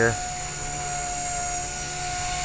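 Blade 180 CFX micro electric RC helicopter in flight, its 3S 5800kv brushless motor and rotor giving a steady high whine.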